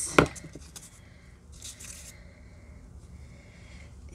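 Small craft supplies handled on a tabletop: one sharp tap just after the start, then a brief scrape about a second and a half in.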